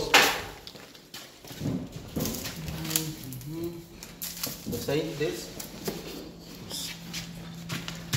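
Background voices talking, with scattered knocks and clicks from cardboard boxes of concrete tiles and loose tiles being handled. A sharp knock comes at the very start, and a low steady hum runs from a few seconds in.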